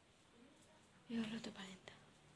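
A woman's voice, a short quiet utterance about a second in, over low room tone, with a small click near the end.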